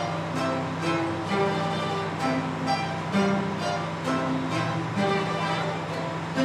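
A guitar and mandolin ensemble playing a piece together: plucked notes in a steady pulse of about two a second over a held low note.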